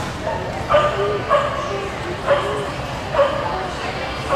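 A dog barking in a series of short, excited barks, about one a second, while running an agility course.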